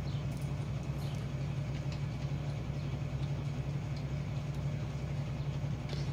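Steady low background hum, with a few faint soft ticks scattered through it from a crochet hook pulling cotton yarn through stitches.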